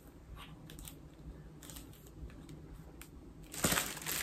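Faint clicks and taps of a makeup compact and its packaging being handled, then a louder crinkling rustle of packaging near the end.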